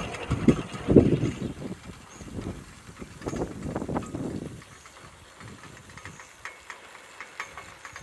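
Gusty wind buffeting the microphone in irregular low rumbles and thumps, strongest in the first half and easing off after about four and a half seconds to a quieter hiss with a few faint clicks.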